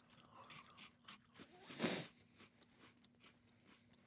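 Faint crunching and chewing of a dry, crisp biscuit, a person eating it plain, with one louder noise about two seconds in.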